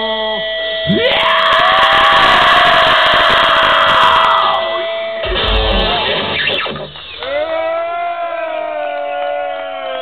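Live rock band's amplified electric guitar ringing out with a long held note, over shouts and whoops from the crowd; near the end a voice lets out a long bending call.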